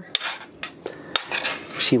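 Metal spoon stirring thick, reduced rice pudding in a stainless steel saucepan, scraping the pot and clinking sharply against its sides several times.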